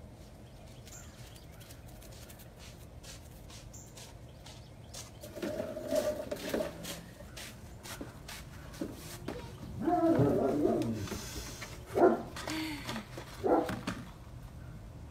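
A dog vocalizing in several bouts over light clicking, with the sharpest sounds near the end.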